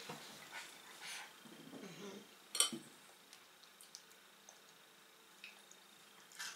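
Faint clinks of a metal spoon in a bowl as a toddler scoops food, the sharpest about two and a half seconds in, followed by a few soft ticks.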